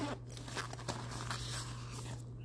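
Fabric tote bag being handled: the cloth rustles and crinkles as hands open a small zippered pocket on its back.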